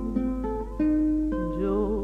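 Guitars playing a short instrumental passage of tango accompaniment, several plucked notes in succession. About one and a half seconds in, a held, wavering melody line comes in, over a steady low hum from the cassette transfer.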